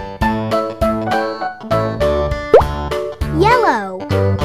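Instrumental children's background music with a regular beat. About two and a half seconds in comes a quick upward-sliding 'plop' sound effect, and near the end a short sound that rises and then falls in pitch.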